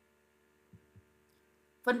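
Near silence with a faint steady electrical hum, and two soft low thumps about a second in; a woman's voice starts speaking near the end.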